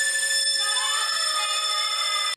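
A harmonica taped onto the wand of an upright vacuum cleaner, sounded by the vacuum's airflow: a loud, steady, alarm-like chord of reeds over the vacuum's hiss, with another note joining about a third of the way in.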